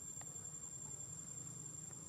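Insects in the surrounding vegetation keeping up a steady, continuous high-pitched trill, with a faint low background murmur beneath it.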